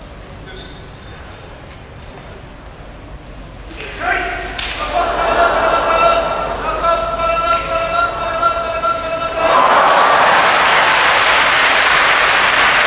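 Hushed sumo arena, then the referee's long held calls ring out while the wrestlers charge and grapple, with a few sharp slaps of bodies. About nine and a half seconds in, the audience breaks into loud applause as the bout ends.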